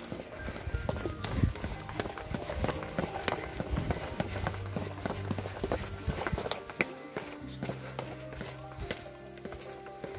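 Background music with held notes, over a quick run of footsteps on concrete stairs going down. The steps thin out about seven seconds in.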